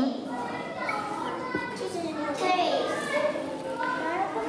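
Several young children talking and chattering at once, their voices overlapping in a classroom.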